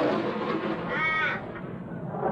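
The rolling tail of a thunderclap, with a crow's single harsh caw about a second in.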